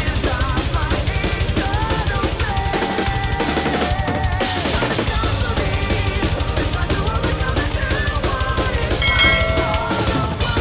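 Fast power-metal drumming on a full drum kit over the recorded band track: rapid double-bass kick drum with snare and cymbals, and a lead guitar melody bending above. The kick drums briefly drop out about three to four seconds in.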